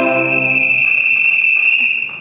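Symphonic band releasing a held chord: the lower instruments drop out about halfway through, leaving one high steady note on top that stops near the end.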